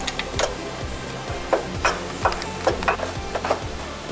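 Background music, with scattered short clicks and knocks at irregular moments as a new passenger-side engine mount is worked by hand into its hole in the mounting bracket of a BMW X3 E83.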